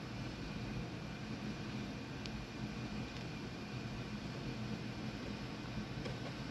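Steady low hum and hiss of background room noise, with one faint tick about two seconds in.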